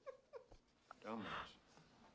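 A woman laughing and saying one word in a drawn-out, high-pitched voice about a second in, its pitch rising and then falling, after a few short giggles.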